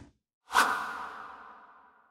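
Logo-reveal whoosh sound effect, starting suddenly about half a second in and ringing on with a held tone that fades away over about a second and a half.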